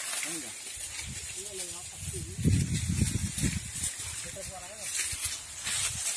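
Dry sugarcane leaves and stalks rustling and crackling as cane clumps are pulled together and bundled. A louder low rumble of bumps comes between about two and three and a half seconds in, and faint voices talk in the background.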